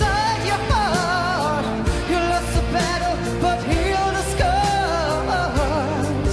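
A solo singer's voice holding and bending high notes with wide vibrato over a pop ballad backing of sustained instruments and bass.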